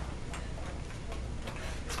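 Clock ticking with faint, even ticks over a low steady hum.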